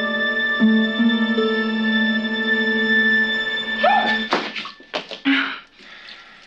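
Film score music of sustained, layered tones that shift pitch in a few steps. About four seconds in it breaks off abruptly into a sudden rising sound and a few short, sharp noisy bursts, the sounds of a startle.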